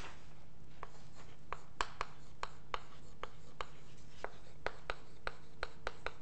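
Chalk writing on a blackboard: a string of sharp, uneven taps, about two a second, as each stroke hits the board, over a faint steady room hum.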